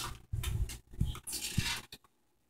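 Handling at a kitchen oven as its control knob is turned off: a quick run of short knocks and scrapes.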